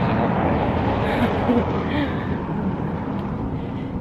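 Steady rushing outdoor noise, strongest in the low range and with a gusty texture, with faint voices in it.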